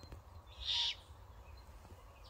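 Fledgling great horned owl giving one short, raspy screech about half a second in, the begging call that young great horned owls use to call their parents for food.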